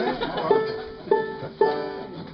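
Old-time string band playing: banjo, mandolin and guitar plucked, with fiddle, and a strong accented note about every half second.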